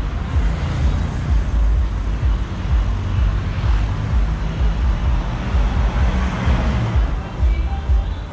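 Road traffic noise from cars and motorbikes on a city street, with a strong, uneven low rumble throughout.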